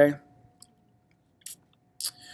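The tail of a man's spoken word, then a pause with only a faint steady hum and a short click about one and a half seconds in.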